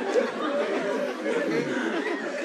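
Audience laughing, many voices overlapping in a hall.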